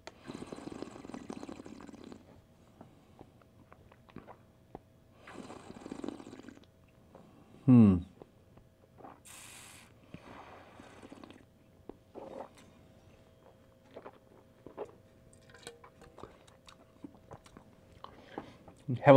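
A wine taster breathes in twice over a glass of red wine, then sips and slurps, drawing air through the wine and working it around the mouth. A short falling hum comes about eight seconds in and is the loudest sound.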